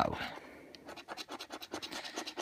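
A penny scraping over the latex panel of a scratchcard: a quick run of short scratching strokes that starts about a second in.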